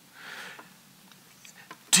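A man's short audible breath, about half a second long, followed by a few faint mouth clicks just before he speaks again near the end.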